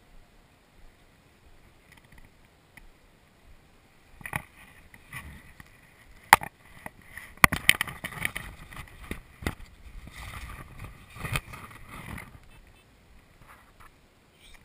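Handling noise from the wearable action camera as it is moved and fumbled with: sharp knocks and clicks with rustling between them, starting about four seconds in and loudest a little past the middle, then dying away near the end.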